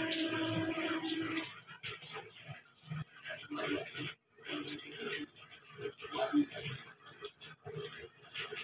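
A voice holding one steady note stops about a second and a half in. After that comes faint, irregular trickling and splashing of starch water draining in a thin stream from a tilted aluminium pot of boiled rice, strained through a cloth.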